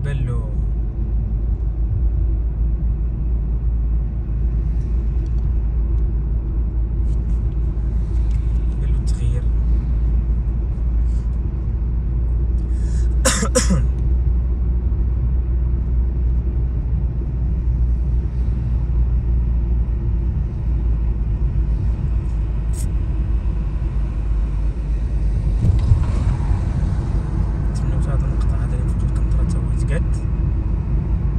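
Steady low road and engine rumble heard inside a moving car's cabin, with a brief, louder pitched sound about 13 seconds in and a swell of noise around 26 seconds.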